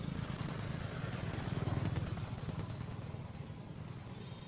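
Low engine rumble of a motor vehicle that swells to a peak about two seconds in and then fades, as of a vehicle passing by.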